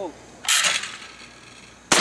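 Two 12-gauge shotgun shots at clay targets: one about half a second in, and a sharper, louder one near the end that rings on with an echo.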